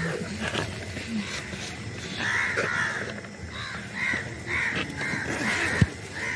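Birds calling outdoors: a string of short calls, about two a second, from about two seconds in. A single sharp thump comes near the end.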